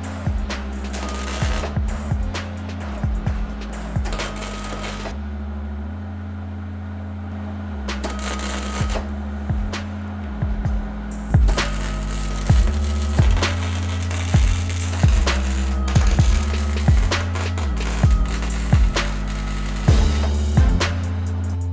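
Background music: a steady bass line, with a drum beat about once a second coming in about halfway through.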